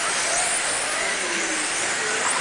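Electric touring-class RC cars with 17.5-turn brushless motors running around the track: a steady high hiss of motors and tyres, with faint whines rising and falling as cars pass.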